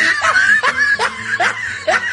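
A person laughing "ha-ha-ha" in a steady string of short, rising bursts, about two a second.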